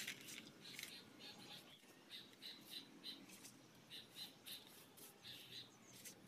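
Faint, short, repeated scrubbing strokes of a wide brush working cement slurry onto a fresh concrete surface, sometimes several strokes in quick succession.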